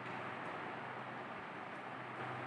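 Quiet room tone: a faint steady hiss with a low hum underneath, in a pause between words.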